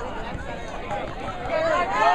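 Several spectators' voices overlapping, talking and calling out, louder and higher-pitched in the last half second.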